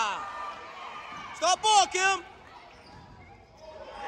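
Basketball shoes squeaking on a hardwood gym floor: three short, high squeaks in quick succession about a second and a half in.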